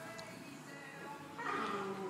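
A dog barks about a second and a half in, the loudest sound, over steady background music.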